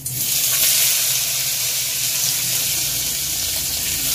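Boiled potato pieces dropped into a hot wok, setting off a loud, steady sizzle that starts suddenly and holds evenly.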